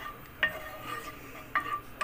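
Two light clinks against a non-stick frying pan as pieces of solid margarine are put in, about half a second in and again near the end, over a faint steady hum.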